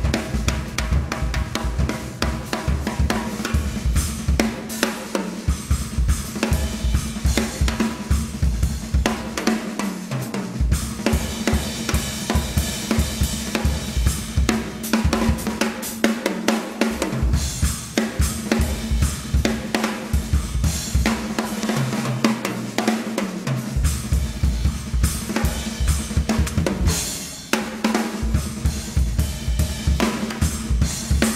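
Tama acoustic drum kit played live in a drum solo: rapid snare and tom strokes over kick drum, with cymbals and hi-hat. The kick drum drops out briefly several times.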